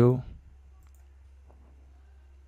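A spoken word trails off at the very start. Then a computer mouse clicks faintly twice, once just under a second in and again about half a second later, over a steady low hum.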